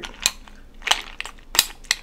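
Metal spoon clinking against a glass bowl and knocking ice cubes while avocado is mashed with the ice: about five separate sharp clinks.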